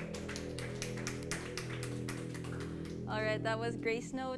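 A band's final chord on keyboards and guitars rings out and holds as a song ends, over a quick run of sharp hits. Voices come in about three seconds in.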